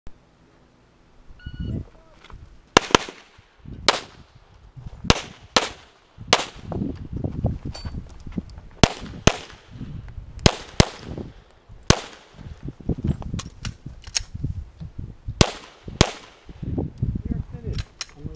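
A shot timer beeps once, then a handgun fires about a dozen sharp shots, mostly in quick pairs, spread over some thirteen seconds as the shooter works through an IDPA stage.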